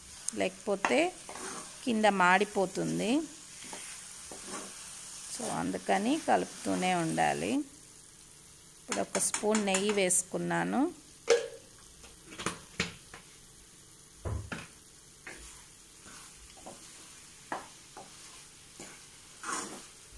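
A spatula stirring and scraping a moist coconut-and-sugar mixture around a non-stick kadai, with a faint sizzle as it cooks. In the second half, sharp irregular scrapes and taps of the spatula against the pan stand out.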